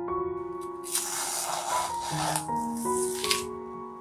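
Soft piano background music with a scratchy rustle of materials rubbing on a canvas, lasting about a second and a half from about half a second in, and a short scrape near the end.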